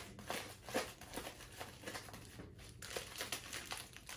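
Plastic bag crinkling faintly in irregular crackles as it is twisted tight around a packed mass of crushed chips.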